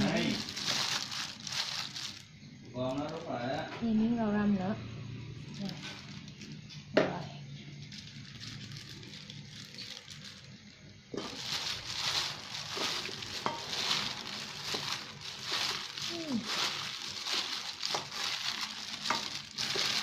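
Thin plastic food-prep gloves crinkling and rustling as hands toss shredded chicken salad with herbs in a stainless steel bowl. A single sharp knock comes about seven seconds in, and brief voices are heard in the quieter stretch before it.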